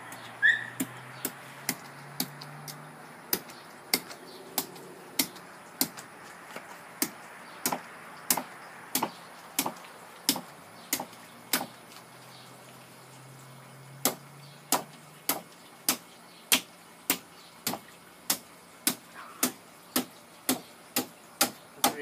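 Thick butcher knife chopping down through the hard-scaled back of a small alligator gar and into the wooden board beneath: a steady run of sharp strokes at about two a second, pausing for a couple of seconds near the middle.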